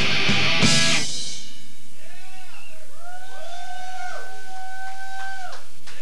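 Punk band's full-volume music cuts off about a second in, leaving a live electric guitar: a few bending, swooping notes, then one long steady held note that drops away shortly before the end.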